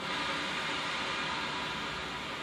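Steady breathy hiss of air blown through a Selmer alto saxophone with no note sounding. It is breath alone, without enough lip pressure on the reed to make it vibrate.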